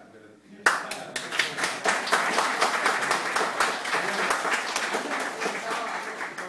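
Studio audience applauding, starting suddenly just under a second in and going on steadily.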